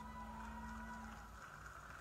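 Faint steady room hum with a soft held tone that stops a little over a second in.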